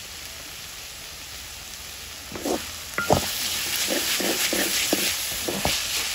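Chopped onions, garlic and green chillies sizzling in oil in a metal pan. A little over two seconds in, a wooden spoon starts stirring, scraping the pan in quick repeated strokes, with one sharp knock against the pan near the middle.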